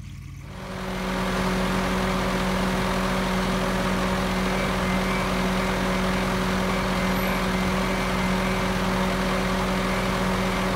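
Bobcat S650 skid-steer loader's engine running at a steady idle, coming up over about the first second and then holding an even hum.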